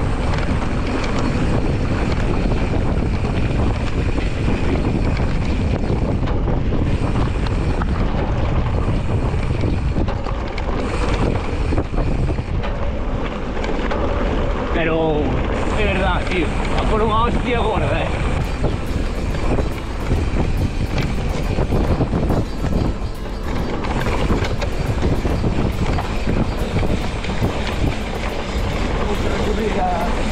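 Steady rush of wind on the microphone of a camera mounted on a mountain bike, mixed with the rough rolling noise of the tyres on a dirt trail. A brief voice-like sound cuts through about halfway.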